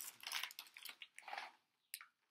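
Faint, intermittent rustling of a plastic cookie package being handled and lifted to the face, with a short click near the end.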